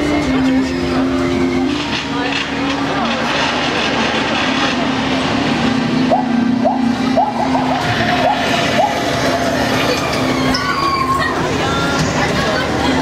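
Ambience aboard a paddle-wheel riverboat ride: a steady rumble under held low musical notes that step between a few pitches every second or so, with voices in the background around the middle.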